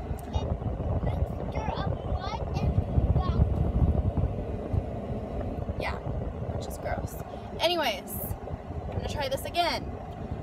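Low rumble of a running car heard inside the cabin, swelling a little in the middle, with short fragments of voices over it.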